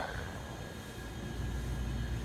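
Steady low background hum of machinery with a faint, steady high-pitched tone running through it.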